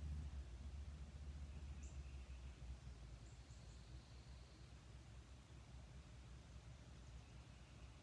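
Near silence: room tone with a low hum that fades after a few seconds, and a few faint, short high chirps.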